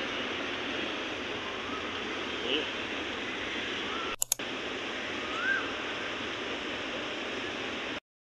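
Steady outdoor city street ambience: an even hiss of traffic and crowd noise with faint distant voices now and then. It drops out briefly about four seconds in, then carries on the same.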